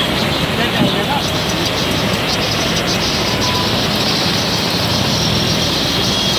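Heavy monsoon rain and floodwater rushing along a flooded street: a loud, steady rush of water noise.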